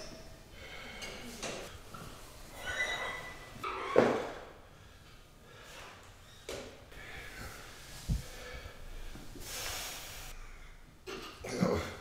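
A man's breathing and exhalations as he does warm-up stretches, with one sharp knock about four seconds in, the loudest sound, and a longer hissing breath later on.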